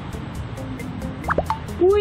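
Background music with a light ticking beat. About a second and a half in come two quick upward-sliding bloops, and right at the end a woman's rising 'ui!' exclamation.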